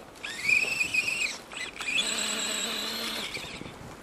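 Electric motor and geartrain of an Axial radio-controlled crawler whining in two bursts of throttle, the pitch rising as each burst begins.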